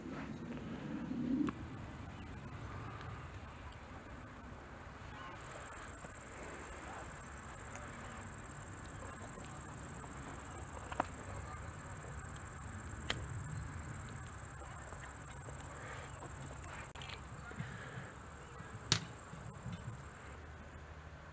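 Crickets in the grass giving a continuous high-pitched buzz, stepping louder and softer a few times, with a few sharp clicks; the loudest click comes near the end.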